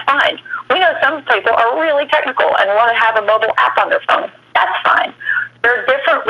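Continuous speech from a webinar presenter heard over a narrow, telephone-like line, with a steady low hum beneath it.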